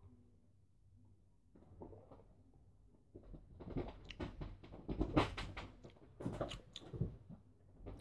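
Mouth sounds of a man tasting a sip of beer: soft lip smacks and swallowing, heard as a run of small wet clicks from about three seconds in.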